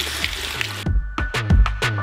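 Water running from a faucet into a stainless steel sink over wet fabric, then background music with a heavy beat starts just under a second in and takes over.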